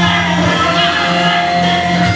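Live electric guitar music: long sustained notes held over a steady low drone, at a loud, even level.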